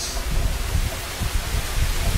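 Steady rain outside an open doorway: an even hiss with an uneven low rumble underneath.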